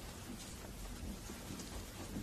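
Quiet room tone: a low, steady hiss of background and recording noise.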